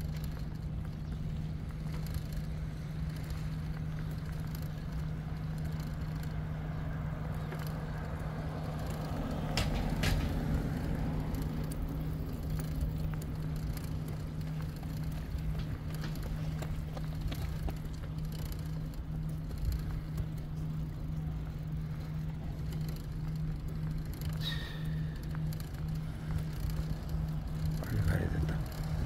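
Steady low hum and wind rumble from a bicycle being ridden along a paved path. A louder swell comes about a third of the way in, and a short high chirp sounds near the end.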